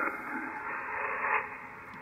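Band-noise hiss from the Yaesu FTdx5000MP's receiver on 40-metre lower sideband, shaped by the narrow SSB passband. As the LSB carrier insertion point is turned from minus toward +200 Hz, the low end drops away about halfway through and the hiss gets thin, with more high emphasis.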